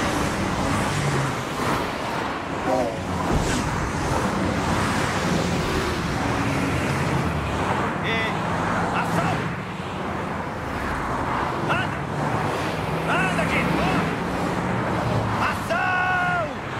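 Freeway traffic: a steady rush of cars speeding past, with short shouted calls breaking in now and then.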